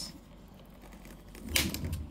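Quiet room, then near the end a brief clatter of handling noise as a plastic toy motorcycle is moved about on a table.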